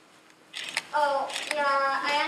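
A woman's voice speaking, starting about half a second in after a short quiet pause.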